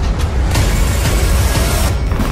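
NASCAR Xfinity stock cars running at racing speed, a loud, steady engine and track noise with heavy low rumble. It grows brighter about half a second in and cuts off abruptly just before the end.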